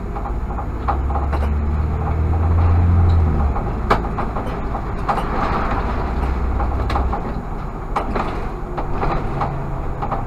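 Irisbus Citelis CNG city bus running on the move, heard from inside the driver's cab: a low engine drone that swells for the first few seconds and then eases, with scattered rattles and knocks from the bus body.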